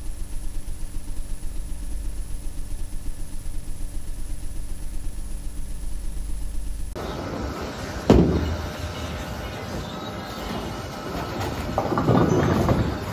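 A low rumbling drone that pulses quickly, then bowling-alley noise: a loud crash about eight seconds in, and a bowling ball being released and rolling down the lane near the end.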